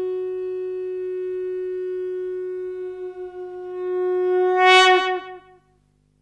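One long, steady note blown on a horn-like wind instrument. It swells louder near the end, then bends down in pitch and dies away about five and a half seconds in.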